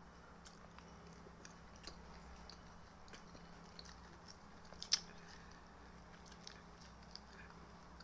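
Close chewing of raw salad vegetables such as carrot: quiet, crisp crunches and mouth clicks, with one sharper crunch about five seconds in.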